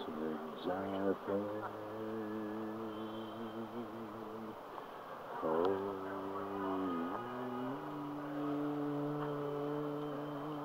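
A person humming long held notes, with a slight waver in the first and the pitch stepping up to a higher steady note about three-quarters of the way through.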